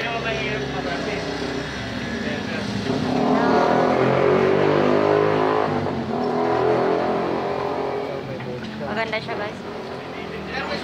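A motor vehicle's engine running close by, building up over a couple of seconds, loudest a few seconds in, then fading away.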